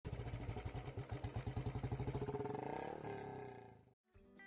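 Motorcycle engine running with a rapid, even exhaust beat, rising in pitch around the middle, then fading out near the end.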